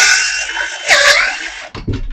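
Milwaukee M12 Fuel 12 V brushless circular saw with a Diablo blade cutting through a 2x6 pine board. The motor whine dips in pitch and recovers about halfway through as the blade bogs under load, and the user says that with the Diablo blade the saw locked up. The whine stops shortly before the end, followed by a low thump.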